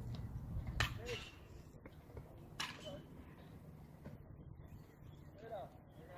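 Faint, distant voices of spectators and players, with two short sharp knocks about two seconds apart near the start.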